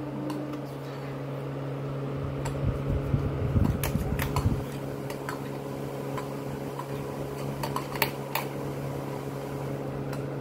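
A steady mechanical hum, like a room fan, under intermittent clicks and knocks of plastic dollhouse wall panels being handled and snapped together: a cluster of clicks and soft thumps about three to four seconds in, and two sharper clicks about eight seconds in.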